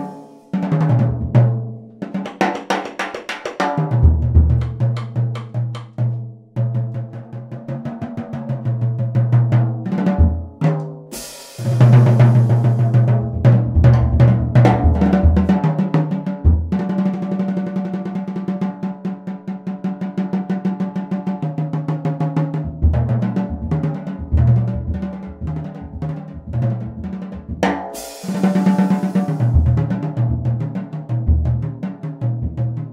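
Drum kit with natural calfskin and goatskin heads played with sticks: snare, toms and bass drum with ride and crash cymbals, in a mellow tone. The playing runs through rolls and busy fills, with a cymbal crash about a third of the way in and another near the end.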